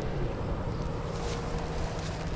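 Outdoor ambience: a steady low engine hum, with wind noise on the microphone.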